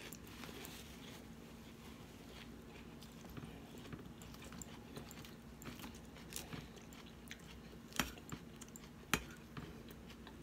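A person chewing a mouthful of romaine lettuce salad, with faint soft crunching. Near the end there are two sharp clicks about a second apart.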